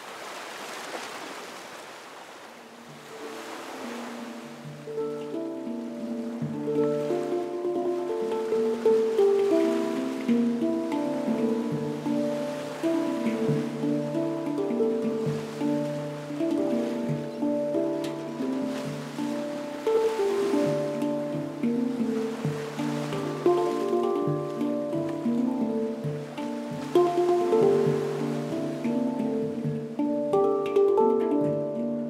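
Instrumental music of ringing, melodic handpan notes over a low held bass tone, growing louder over the first few seconds, with the hiss of ocean surf at the start.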